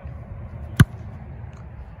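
An American football being punted: one sharp impact of the kicker's foot on the ball, a little under a second in, over a steady low outdoor background noise.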